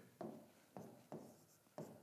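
Faint strokes of a marker pen writing on a whiteboard, about four short scratches.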